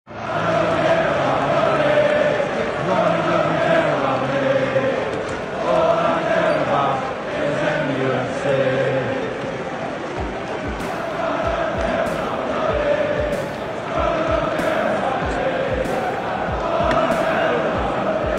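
Football stadium crowd of Manchester United supporters singing a chant together in the stands. A steady thumping beat joins about ten seconds in, roughly three beats every two seconds.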